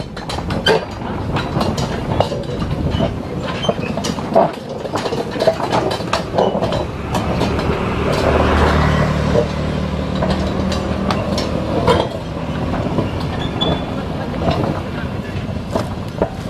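Loaded narrow-gauge sugarcane rail wagons rolling slowly, with irregular metallic knocks and clanks from the wheels, couplings and wagon frames. A low engine drone swells in the middle and fades again.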